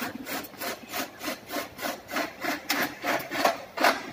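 Rhythmic back-and-forth rasping strokes of a hand tool, about three a second, with one louder stroke near the end.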